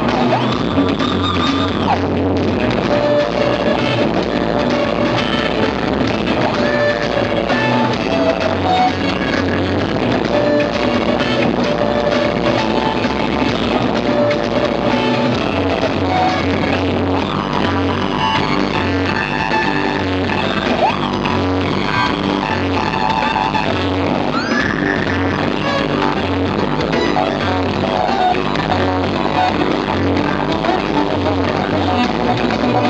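Electric guitar played loud through an amplifier and a two-by-twelve cabinet: a continuous rock instrumental melody with held notes and a few sliding pitch glides, over a steady drum backing.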